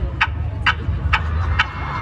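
Festival PA system playing a song's intro beat: sharp percussive clicks about twice a second, steady and even, over a low rumble.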